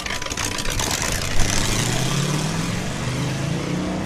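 Engine of a 1927 Ford Model T hot rod roadster pulling away and accelerating. Its pitch rises over a couple of seconds, then holds steady and fades as the car moves off.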